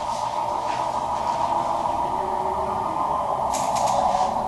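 Sheets of paper rustling as they are handled, with a brief burst of crinkling near the end, over a steady mid-pitched background noise.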